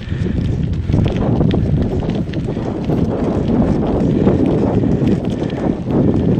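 Bicycle rolling over cracked, weathered asphalt: a steady rumble of tyres on the rough surface with many small rattling knocks from the bumps, and wind buffeting the microphone.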